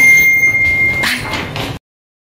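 Lift arrival chime: a single high ding that rings for about a second and fades, with a short laugh over it. All sound cuts off suddenly near the end.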